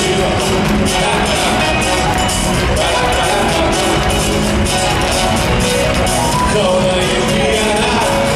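Live pop band playing a cha-cha rhythm song with drums, percussion, guitars and keyboards at full volume, heard from the audience in a large arena, with a steady beat of drum and cymbal hits.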